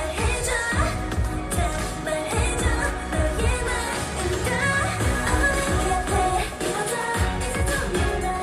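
K-pop dance song performed live by a girl group: female voices singing over a backing track with a steady beat, played through the stage sound system.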